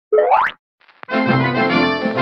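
A short cartoon sound effect sweeping quickly upward in pitch, then after a brief gap a click and the start of a music jingle about a second in.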